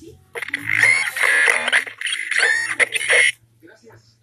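Talking Hulk action figure playing a recorded sound effect with no words through its small speaker, about three seconds long, in two parts with a short break in the middle.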